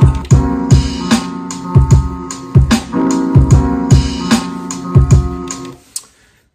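A hip hop beat playing from an Akai MPC One: punchy kick and drum hits over a sampled chord loop. It stops abruptly just before the end.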